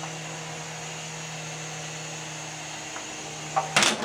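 Small indoor RC helicopter's electric rotor motor whirring steadily in a hover. Near the end the motor sound cuts off with a sudden clatter as the helicopter crashes.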